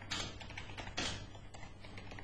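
Computer keyboard being typed on, a few quiet keystrokes.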